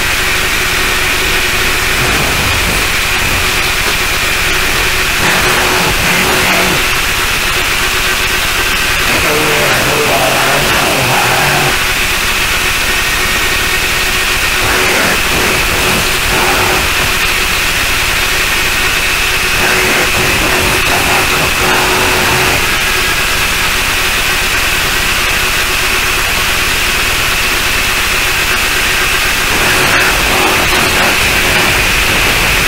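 Harsh noise music: a loud, unbroken wall of distorted static with a steady high-pitched whine and a lower steady hum running through it.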